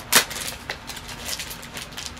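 A vinyl LP in a plastic outer sleeve being handled: one sharp crinkle or tap just after the start, then light rustling and small clicks.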